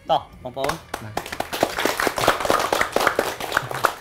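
A group of people clapping their hands in applause, starting about a second in and stopping just before the end.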